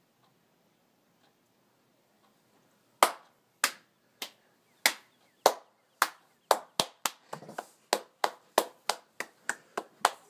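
One person clapping his hands: after about three seconds of near silence, single claps come slowly and then quicken into a steady run of applause.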